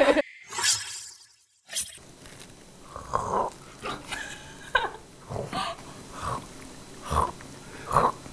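Crispy fried chicken crunching as it is bitten and chewed close to the microphone, a sharp bite about two seconds in followed by irregular crunches, mixed with stifled laughter.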